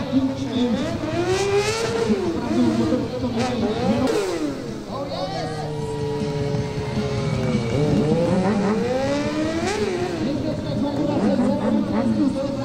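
Stunt motorcycle engine revving, its pitch sweeping up and down over and over as the rider throttles through tricks. Around the middle it holds one steady pitch for a couple of seconds.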